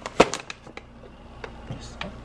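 One sharp tap about a quarter second in, then a few lighter taps and clicks: handling noise from packaged groceries being moved about on a table.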